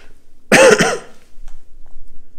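A man coughing into his fist, one short loud burst about half a second in.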